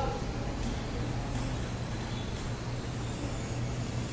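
Room tone in a pause between words: a steady low hum with faint even background noise.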